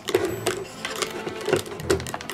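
Rapid, irregular clicking and clattering over light background music.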